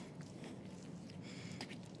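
Faint rubbing of a scrub pad on window glass over a low steady hum, with a few light clicks near the end.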